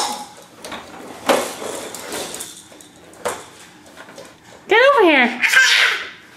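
A few light plastic knocks from a toddler's push-along baby walker, then the toddler gives high-pitched squeals near the end, each rising and falling in pitch.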